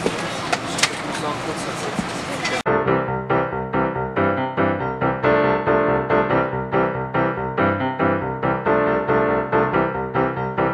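Steady noise of an airliner cabin with a few clicks for about two and a half seconds. It cuts off abruptly and piano-keyboard background music with a steady beat takes over.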